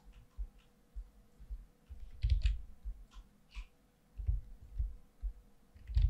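Scattered quiet clicks and light taps of a computer mouse and keyboard being worked, with a few louder clicks about two to three and a half seconds in.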